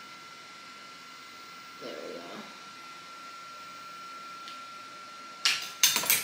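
Small hard makeup tools and containers being handled on a tabletop: a quick run of sharp clatters and knocks near the end, over a steady faint hiss with a thin constant tone.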